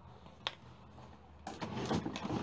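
A single light click about half a second in, then close rustling and scraping from about a second and a half in as a hair wrap is pulled off the head.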